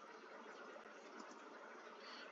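Near silence: faint steady room hiss, with one faint click a little under a second in.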